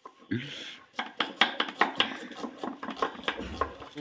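Two kitchen knives slicing red onions on a wooden board, the blades knocking quickly and irregularly against the wood.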